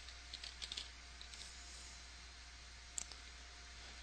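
Faint computer keyboard keystrokes as a password is typed into a sign-up form: a quick run of key presses in the first second and a half, then a single click about three seconds in.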